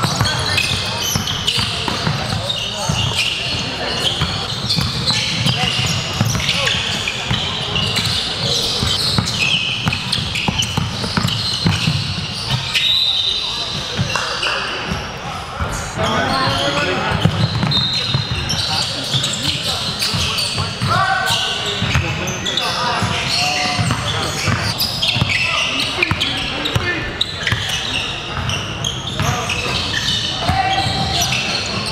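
Live game sound in a gym: a basketball dribbled on a hardwood court with repeated bounces, sneakers squeaking, and indistinct voices echoing in a large hall.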